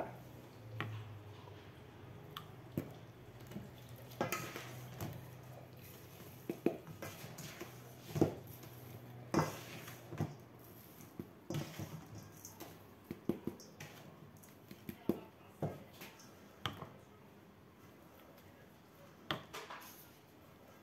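Plastic spatula scraping and tapping in a stainless steel bowl of salt while salt is spooned into a small plastic bottle: irregular clicks and knocks throughout.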